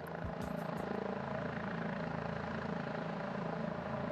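Husaberg hard-enduro dirt bike engine running at low revs with a steady, fast chug as the bike crawls over boulders.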